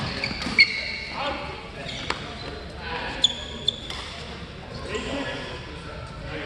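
Badminton rally: racket hits on a shuttlecock as four sharp cracks spread over about three and a half seconds, with sneakers squeaking on the court floor.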